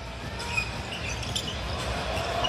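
Basketball arena crowd murmur with a ball being dribbled on the hardwood court.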